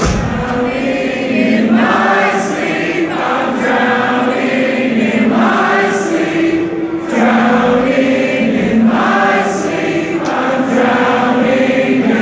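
Concert crowd singing along in unison in sung phrases of a second or two, with the drums dropped out.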